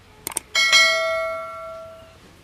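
Two quick clicks, then a bell struck once, ringing out with many overtones and dying away over about a second and a half.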